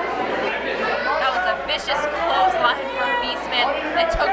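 Crowd of wrestling fans in an indoor hall, many voices talking and calling out at once with no single voice standing out.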